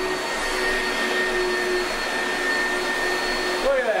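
Oreck upright vacuum cleaner running steadily on carpet: a rushing noise with a steady high whine.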